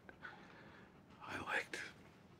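Near-quiet room tone broken by a short, soft, whispered or breathy bit of voice about a second and a half in.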